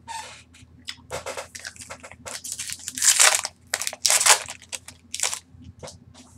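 Magic: The Gathering trading cards being handled and laid down on a playmat: a string of irregular scraping and rustling noises, loudest in a few short bursts around the middle.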